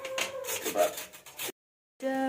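Carrots being grated on a metal box grater: quick, repeated rasping strokes that stop abruptly about a second and a half in.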